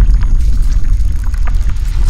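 Sound-design effects for an animated logo intro: a loud, deep rumble with scattered small crackles over it.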